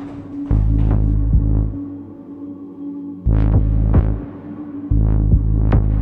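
Dark, tense film score: three long, deep bass pulses with sharp struck hits on them, over a steady humming drone.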